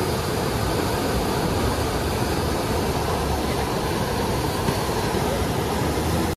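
Standing river wave rushing steadily: a constant, even whitewater noise with no breaks.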